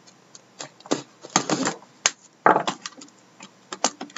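Irregular clicks and short crinkling rustles of a sealed, plastic-wrapped trading-card box being handled and its wrapping cut and pulled open.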